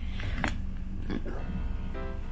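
Background music playing, with one short click about half a second in as the clear plastic lid is lifted off a Nespresso Aeroccino 3 milk frother that has just finished and switched itself off.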